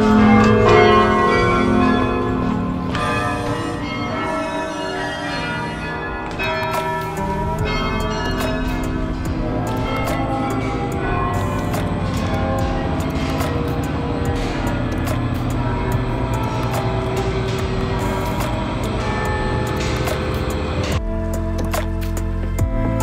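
Carillon bells in a belfry ringing, many pitched bells sounding over one another with long ringing decays. Quick clicks run through the ringing from about six seconds in, and near the end a different, more even musical sound takes over.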